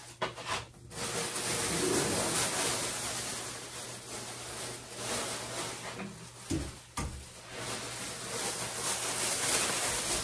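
Plastic shopping bag rustling and crinkling as it is handled and rummaged through, with a few sharp knocks.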